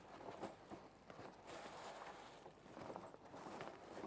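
Thickened sugar syrup simmering in a frying pan: faint, irregular soft ticks and crackle.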